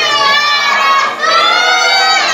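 Boys and men of a prayer congregation chanting together, loud and drawn out. Two long held phrases with a short break about a second in. This is the sung shalawat response between tarawih prayer cycles.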